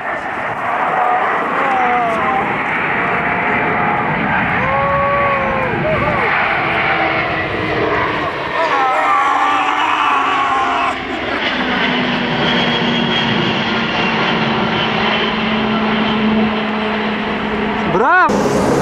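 Jet noise from an Antonov An-124 Ruslan's four turbofan engines as the big freighter flies low overhead, a dense, loud rush with a low hum that slides slightly down in pitch and then holds steady about halfway through. People shout and whoop over it in the first half.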